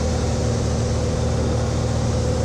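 Single-engine light aircraft's piston engine and propeller droning steadily, heard inside the cabin with a hiss of rushing air.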